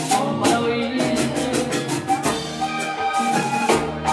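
Live Latin band music led by a button accordion over drum kit and hand-drum percussion, played at a steady loud level with a regular beat.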